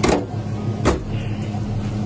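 Freshly tuned box Chevy engine idling steadily, with two sharp clicks a little under a second apart.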